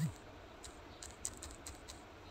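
A short low thump, then faint scattered clicks and ticks over a low hiss.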